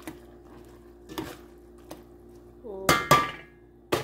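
A utensil stirring macaroni in a stainless steel pot, knocking against the pot's side a few times, with the loudest, briefly ringing metallic clang about three seconds in.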